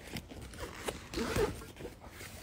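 Handling noise from a phone being moved about: rustling and scraping with a few short knocks.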